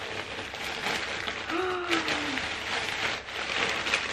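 Plastic mailer bag crinkling and rustling steadily as a blanket is pulled out of it, with a short hummed voice sound about halfway through.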